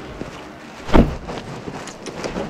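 A car door shutting: one loud thump about a second in, with a couple of faint clicks after it, over a steady outdoor hiss.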